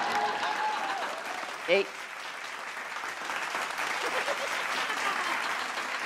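Studio audience applauding, the clapping easing off slowly. A man gives a short shout of "Hey!" about two seconds in.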